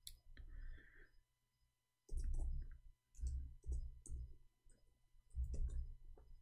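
Typing on a computer keyboard, fairly faint: several short runs of key clicks with dull knocks beneath them.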